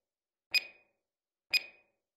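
Two short electronic beeps, one second apart, from a workout interval timer counting down to the start of the next exercise.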